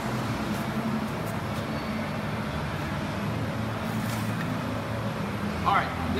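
Steady low mechanical hum with a faint background noise, broken by a few faint knocks.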